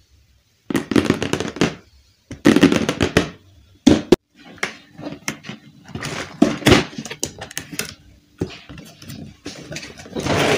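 Hands handling a cardboard toy box: short bursts of taps, clicks and rubbing on the cardboard, separated by brief quiet gaps.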